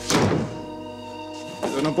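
An interior wooden door being shut hard: one loud thunk right at the start, with background music holding steady chords underneath.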